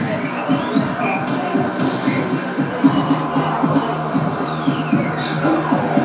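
Live electronic dance music from a Roland MC-909 groovebox through pub PA speakers. A synth tone sweeps up and then back down over about five seconds, above a steady beat with ticking hi-hats and a held bass note.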